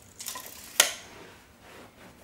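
Steel tape measure retracting: a short rattling slide of the blade ending in one sharp snap about a second in as the hook hits the case.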